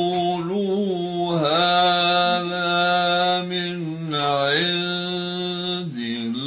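Elderly man reciting the Quran in melodic tajweed style, drawing out long sung vowels with slow bends in pitch.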